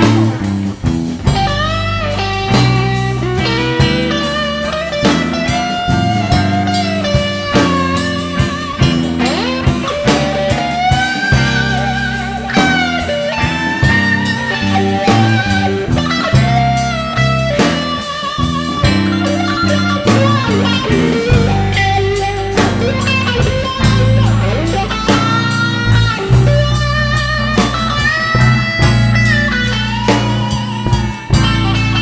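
Live blues band playing an instrumental passage in a slow blues: electric guitar with a lead line of bent, wavering notes over bass and drums.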